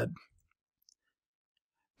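Near silence: a spoken word trails off in the first moment, then a dead-silent gap without even room tone.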